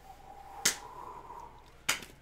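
Two sharp clicks about a second apart: hard plastic graded-card slabs knocking against each other as they are handled in a box.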